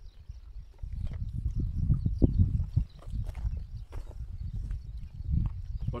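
Wind buffeting the microphone: an uneven low rumble that swells and drops in gusts, loudest about two seconds in.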